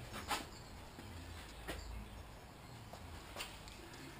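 Quiet room tone with three faint, short clicks spread over a few seconds, the handling noise of a hand-held camera being moved about.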